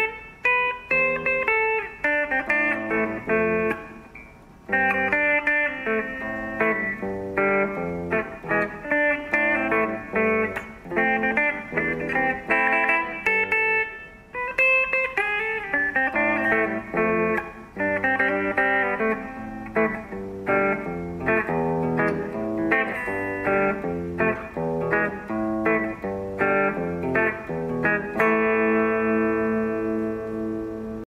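Electric guitar playing a melody of picked single notes, with a brief break about four seconds in, ending on a chord left ringing for the last two seconds.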